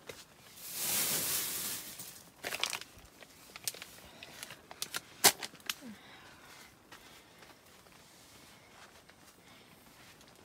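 Rustling and crinkling of nylon tent fabric and sleeping bags as they are handled, with a few sharp clicks, the loudest about five seconds in. It goes quieter in the last few seconds.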